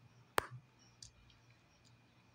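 A single sharp click a little under half a second in, followed by two much fainter clicks.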